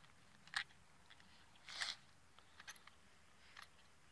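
Faint clicks and a short scrape of a rifle being handled and loaded by hand: a click about half a second in, a brief scrape near two seconds, then a few small ticks.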